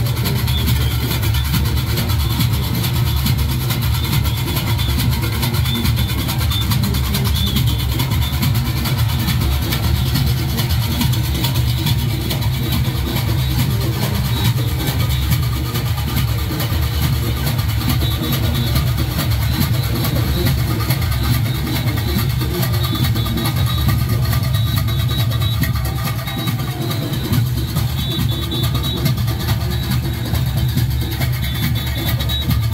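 Live Junkanoo parade music: goatskin drums and cowbells played in a loud, dense, unbroken rhythm.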